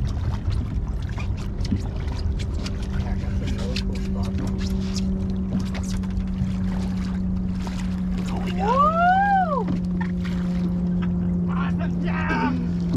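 Water splashing and knocking as a big redfish thrashes at the boatside and is scooped into a landing net, over a low rumble and a steady low hum. About nine seconds in there is a single rising-then-falling cry.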